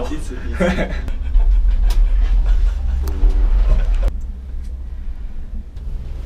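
Low rumble inside a moving gondola cabin, ending sharply about four seconds in, with brief voices over it.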